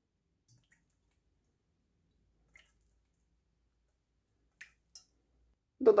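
Near silence with three faint clicks from kitchen items being handled. The last two clicks come close together about a second before the end.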